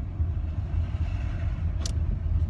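Steady low rumble of a car heard from inside the cabin, with one short click near the end.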